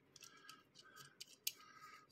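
Faint small clicks of fingers handling a toy diecast car and pressing at its loose clear plastic windscreen.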